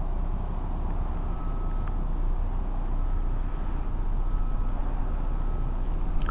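Steady low rumbling background noise with no distinct events, and a faint thin high tone heard now and then.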